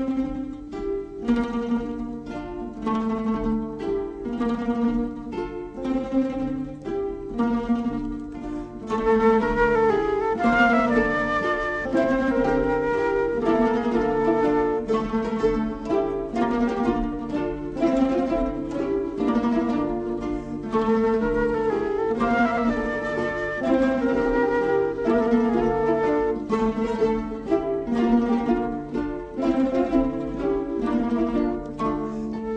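Rondalla ensemble of bandurrias, lutes and guitars playing a traditional Catalan melody, the plucked strings strumming in a steady rhythm. About nine seconds in the music grows fuller and louder, with a flute playing the melody over the strings.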